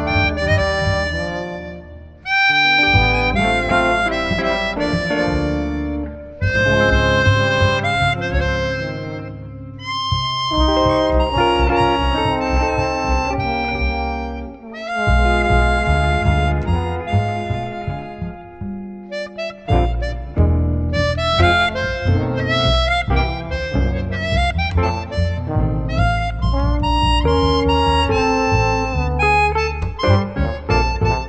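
Chromatic harmonica playing the melody with a small jazz band of trombone, guitar and double bass, in phrases broken by short breaths. The line turns quicker and busier about two-thirds of the way in.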